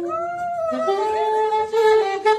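Saxophone playing a slow melody with sliding, bent notes, then a long held note from about a second in.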